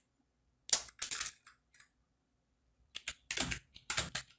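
Computer keyboard being typed on, in two short bursts of keystrokes, one about a second in and another near the end.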